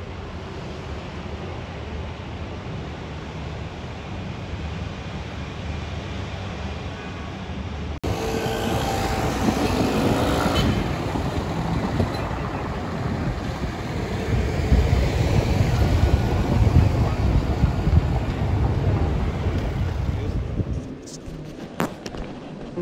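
City street ambience: a steady low hum at first, then after a cut about eight seconds in, louder road traffic of cars and motor scooters with the voices of passers-by. It falls away just before the end.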